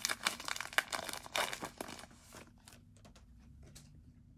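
Foil wrapper of a trading-card pack crinkling and tearing as it is ripped open by hand: dense crackling for about two seconds, then a few scattered crackles as the cards are drawn out.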